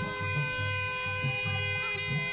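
Music: a steady held drone with a drum beating low underneath.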